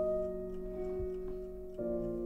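Soft keyboard music holding sustained chords, which change near the end, over the ticking of a wind-up alarm clock at about four ticks a second. A dull low thud comes about a second in.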